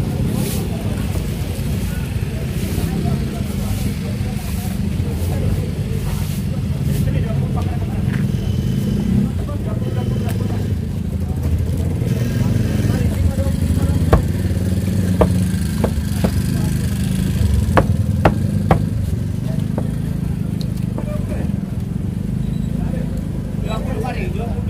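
A large knife chopping yellowfin tuna on a wooden chopping block, with a short run of sharp knocks in the second half. Under it runs a steady low rumble of background noise with indistinct voices.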